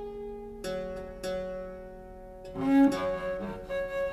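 Chamber music: harpsichords plucking repeated ringing chords, with bowed viola da gamba notes. About two and a half seconds in the music grows louder and busier, with short, strongly accented low notes.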